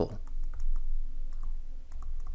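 Stylus tapping and scratching on a pen tablet while handwriting a word: a run of light, irregular clicks.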